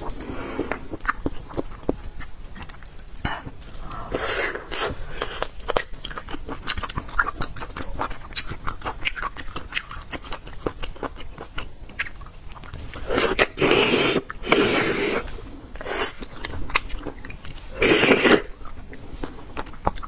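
Close-miked chewing and biting of spicy braised beef bone marrow and meat, with many sharp wet mouth clicks. There are louder spells about four seconds in, twice around two-thirds of the way through, and once near the end.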